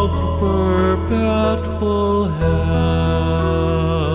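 Background music: a slow melody with vibrato over held low bass notes.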